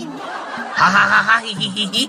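A person laughing under the breath: breathy chuckling that is loudest a little before the middle.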